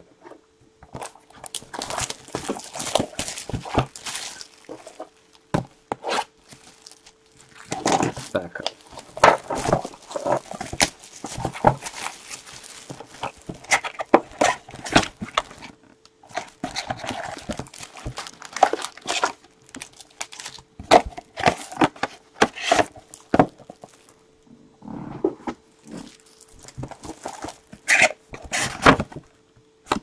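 Plastic shrink-wrap crinkling and tearing and cardboard rustling as a sealed trading-card hobby box is cut open and unwrapped, in irregular bursts of handling noise with short pauses between, over a faint steady hum.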